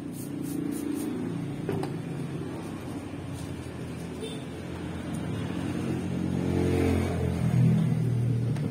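Aircraft passing overhead, heard from inside: a low, steady droning hum that grows louder toward the end.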